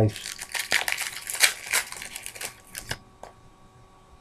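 Rapid crinkling and clicking of Topps Chrome trading cards and their pack wrapper being handled close to the microphone, stopping about three seconds in.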